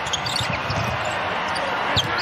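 A basketball dribbled on a hardwood court over a steady haze of arena crowd noise, with a short high squeak, like a sneaker on the floor, at the very end.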